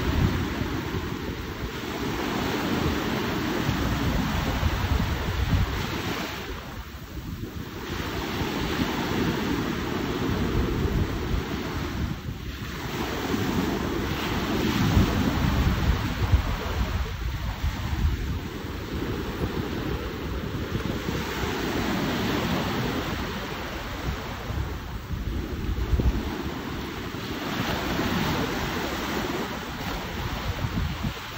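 Sea waves washing in, swelling and easing every five seconds or so, with wind buffeting the microphone.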